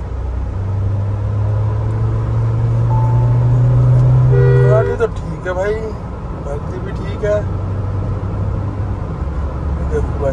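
Mahindra Thar under hard acceleration, engine and road noise heard from inside the cabin: the engine note rises and grows louder for about five seconds, then drops suddenly as at an upshift and keeps pulling at a lower pitch. A short tone sounds just before the drop.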